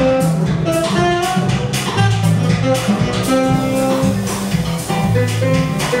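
Live small-combo jazz: upright double bass, drum kit and saxophone playing, the bass stepping through low notes under steady cymbal time and a melodic line above.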